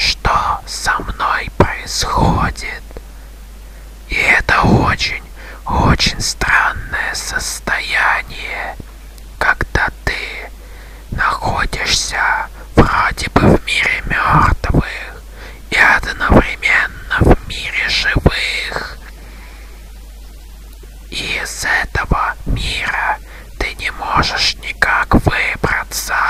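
A voice whispering in short phrases, with brief pauses between them and one longer pause of about two seconds near the end.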